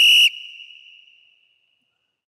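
A short, high-pitched electronic tone, added as a sound effect over the end-screen graphic. It is held for about half a second, then rings away and fades out within the next second.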